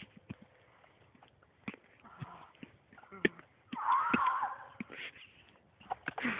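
Faint scattered knocks and rustles, with a short wavering high-pitched voice sound about four seconds in.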